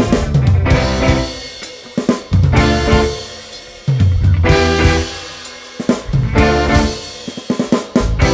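Live band with drum kit, electric guitar, bass and keyboard playing a passage of loud accented ensemble hits about every two seconds, each dying away before the next, with snare, bass drum and cymbals prominent and a quick drum fill near the end.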